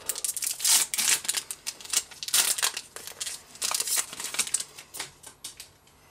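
Foil Pokémon booster-pack wrapper being torn open and crinkled by hand: a run of rapid, irregular crackles and rustles that die away about five and a half seconds in.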